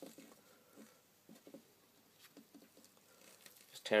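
Faint, scattered small rustles and taps as masking tape is handled and wrapped around a cue shaft just below the tip.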